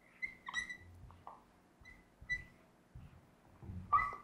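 Marker squeaking on a whiteboard as numbers are written: four short, high squeaks, faint overall.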